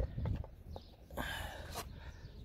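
Light handling noises: a few soft clicks and knocks and a short rustle, as a hand moves a metal transmission valve body and its cardboard bolt template.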